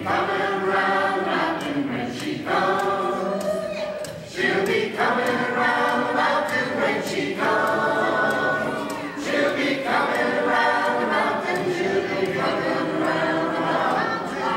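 A large group singing together in chorus, phrase after phrase with short breaks, over a band of strummed acoustic guitars, banjos, mandolins and fiddles.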